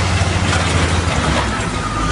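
Wheel loader's engine running under load as its bucket pushes crash wreckage along the road. A heavy low drone with a wash of noise over it, dropping in pitch about a second in.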